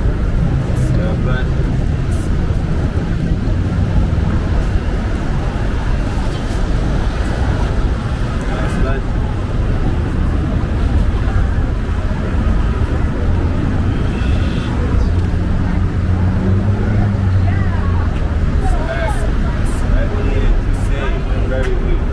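City street ambience: a steady low traffic rumble with vehicles passing and indistinct voices.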